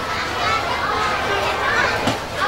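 Chatter of a crowd, with children's voices among it.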